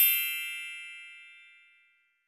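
Sparkle chime sound effect: a bright, bell-like ring of several high tones that fades away over about two seconds.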